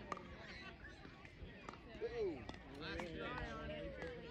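Distant, indistinct voices of players and spectators at a youth baseball game, including a short falling call about halfway through and a longer held call near the end. A few faint sharp clicks are heard between them.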